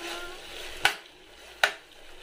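Steel spoon stirring food frying in a stainless steel pot: it clinks against the pot twice, just under a second apart, over a faint sizzle.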